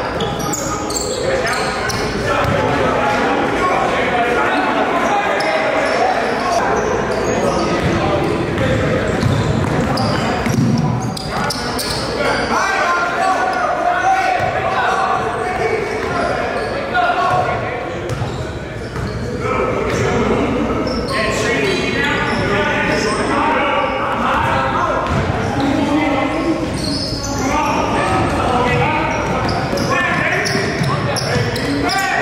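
Live game sound of a basketball being dribbled on a hardwood gym floor, the bounces echoing in a large hall, over indistinct voices of players and onlookers.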